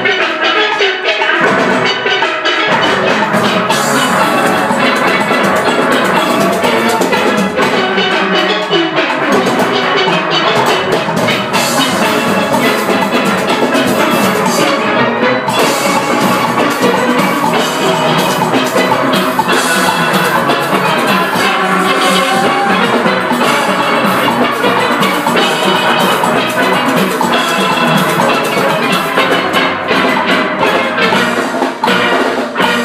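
A steel band playing at full strength: many steel pans ringing out a melody and chords over a steady percussion beat.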